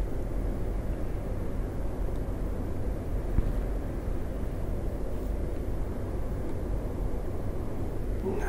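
Steady low background rumble of room noise, with one small click about three and a half seconds in.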